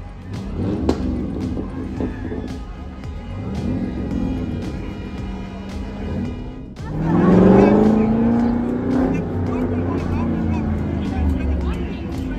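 Street celebration noise: music with a steady beat, cars passing slowly, and crowd voices. About seven seconds in, a loud, long yell rising in pitch stands out above the rest.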